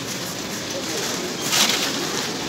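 Busy shopping-centre ambience: a steady wash of background voices and movement, with a brief louder rustle near the end.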